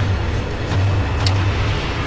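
Horror film trailer sound design: a dense, noisy rumble whose low end swells in repeated pulses, with one short sharp hit a little past halfway.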